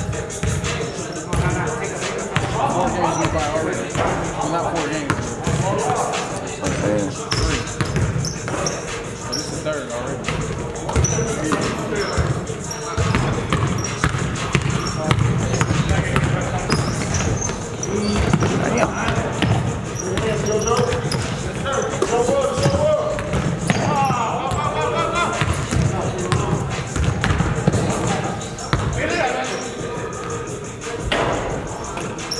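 A basketball bouncing repeatedly on a hardwood gym court during play, with indistinct players' voices calling out through the game.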